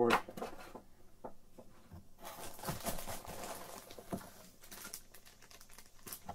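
Clear plastic bag crinkling and cardboard packaging rustling as a bagged camera is lifted out of its box: a soft, irregular crackle that starts about two seconds in.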